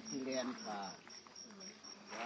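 A cricket chirping in an even rhythm, about four to five high chirps a second, under faint voices.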